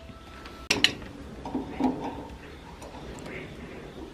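Metal hand tool clinking against the steel drive gear and shaft of a chaff cutter while its drive is being refitted after a snapped belt; two sharp clicks just under a second in, then quieter working noises.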